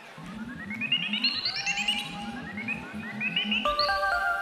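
Electronic synthesizer music played live: quick rising stepped sweeps repeat over a fast pulsing low sequence, and sustained synth chords with bass come in near the end.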